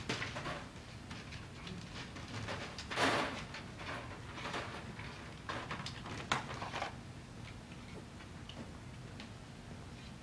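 Plastic lottery balls clicking and rattling against each other and their trays as they are loaded into a lottery machine, in irregular small clatters, with the loudest rattle about three seconds in.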